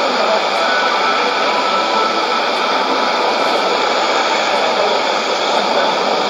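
Steady shortwave static and hiss from a Sony ICF-2001D receiver tuned to an AM broadcast on 17850 kHz, with no clear programme audio standing out above the noise.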